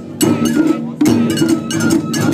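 Japanese taiko drums struck in rhythm, with loud hits shortly after the start and about a second in. A high bamboo flute (shinobue) melody plays over them.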